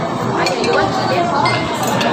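Metal cutlery clinking against plates in a few short clinks, over the steady chatter of a busy restaurant dining room.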